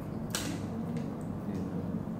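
A single sharp click about a third of a second in, followed by a few faint ticks, over a steady low room hum.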